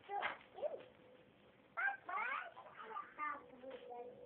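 Young children's voices: short high-pitched calls and babble, with a rising squeal about two seconds in.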